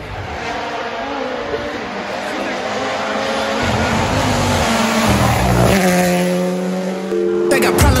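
A rally car approaching at speed on a wet tarmac road and going past, its engine note rising as it nears and dropping as it passes, over a steady hiss of tyre spray. Hip-hop music comes in near the end.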